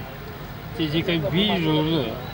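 A man speaking Marathi from just under a second in, over a steady low rumble of the idling car he is sitting in.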